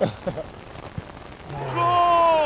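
Steady heavy rain hissing on an artificial football pitch, with a short knock about a second in. Near the end a man lets out a loud, drawn-out shout that falls in pitch.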